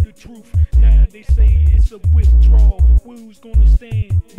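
Hip hop track: a rapped vocal over a beat with heavy, repeated bass hits.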